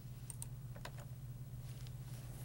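A few scattered computer keyboard keystrokes as a search term is typed, over a steady low hum.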